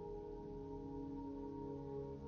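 Soft ambient background music: sustained tones held over a low drone, with the chord shifting slowly about one and a half seconds in.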